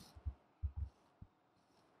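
A few faint, soft thumps from computer keyboard keys being pressed: two just after the start, two more a little later and a single one past the middle.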